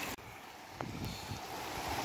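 Steady rushing noise of floodwater flowing in heavy rain, dropping a little in level just after the start.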